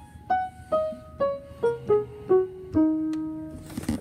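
Piano played one note at a time in a slow falling line, a simple made-up 'game over' tune, the last and lowest note held longest.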